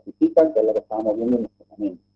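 A man speaking in continuous, word-like phrases with brief pauses, over a faint steady low hum.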